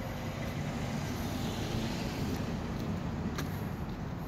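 A car driving past close by on an asphalt street, its tyre and engine noise swelling and fading over a steady low rumble, with a single sharp click near the end.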